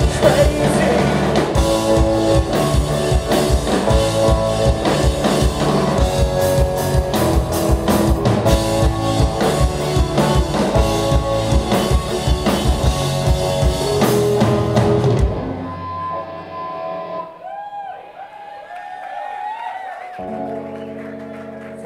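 Live rock band playing an instrumental passage on electric guitar, bass, keyboard and drum kit. About fifteen seconds in the full band stops, and quieter held notes with a wavering pitch ring on as the song ends.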